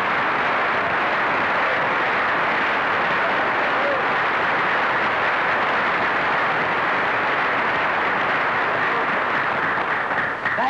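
Studio audience applauding steadily, a dense unbroken clapping that welcomes a comedian's entrance onto the stage.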